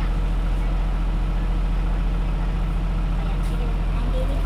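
Steady low engine hum of a bus heard from inside the passenger cabin, running evenly with no change in pitch.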